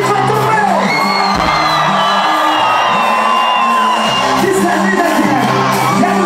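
Live band playing loud music with a stepping bass line, with the audience whooping and cheering over it.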